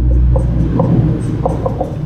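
Marker pen squeaking in short strokes on a whiteboard as a word is written, over a steady low hum.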